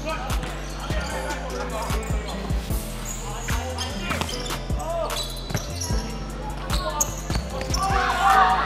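Indoor volleyball rally: repeated sharp smacks of the ball against hands and arms and players moving on the hardwood court, with distant voices, all under background music with a steady low bass line.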